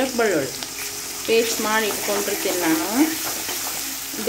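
Sliced onions and green masala paste sizzling in hot oil in a metal kadai, stirred with a steel spoon. A person's voice is heard over the sizzle at the start and again through the middle.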